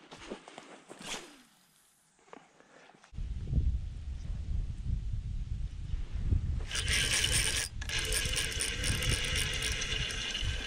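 Spinning reel being cranked: a geared whir with fine rapid clicking that sets in about seven seconds in and keeps going. Under it, from about three seconds in, there is a steady low rumble.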